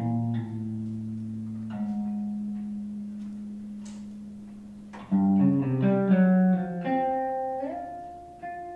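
Electric guitar playing free improvisation: plucked chords left to ring and fade, then a louder flurry of notes about five seconds in, and a note that slides up in pitch near the end.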